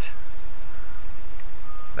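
Wind buffeting the camera microphone: a steady low rumble.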